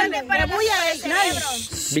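People talking over one another, with a hiss from about half a second in that cuts off near the end.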